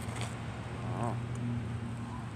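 Steady low hum of a motor vehicle's engine running, with a man's short "oh" about a second in.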